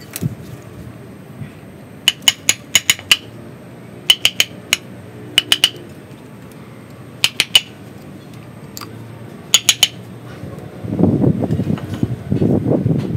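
Quick clusters of three to five sharp metallic clicks from a metal hand tool working on a bonsai root ball. Near the end a louder, rough low rustling begins.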